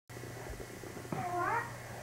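A baby's short, high-pitched vocal sound, dipping and then rising in pitch, about a second in.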